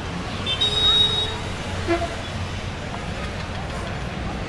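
Road traffic at a busy junction: a steady rumble of idling and slow-moving vehicles, with one vehicle horn tooting briefly about half a second in.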